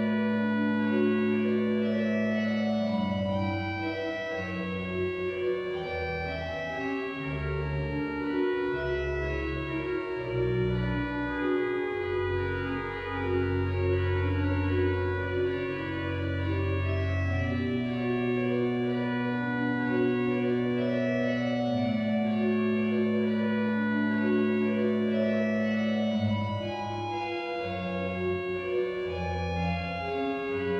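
The Methuen Great Organ, a large pipe organ, playing a soft, lyrical piece: slow sustained chords over long-held pedal bass notes.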